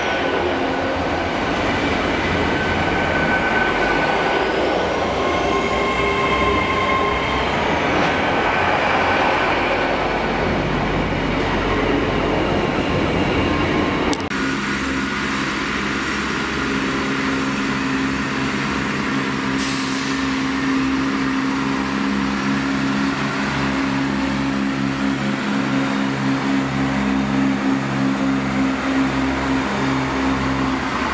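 A Great Western Railway Class 800 Intercity Express train running past a platform: wheel and running noise with several thin, squealing tones. After a sudden cut about halfway through, a CrossCountry Class 170 Turbostar diesel multiple unit moves past with its underfloor diesel engines running in a steady, pulsing drone.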